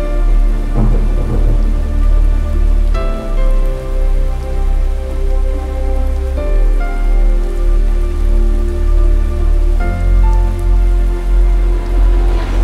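Rain falling, laid over slow cinematic music: sustained chords that change every three to four seconds above a deep, pulsing bass.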